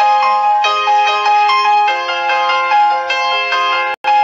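Outro music: a bright, chiming melody of short bell-like notes in the manner of a marimba or glockenspiel. It breaks off abruptly at the very end.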